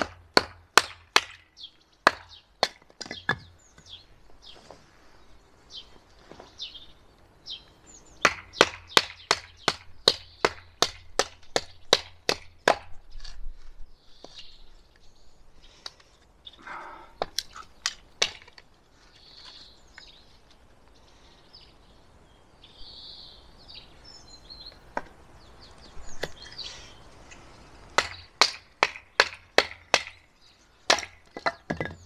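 A wooden baton knocks repeatedly on the spine of a Fiskars utility knife, driving the blade down through a piece of branch wood on a chopping block to split it. The sharp knocks come in runs of rapid blows, about two to three a second, with pauses between the runs.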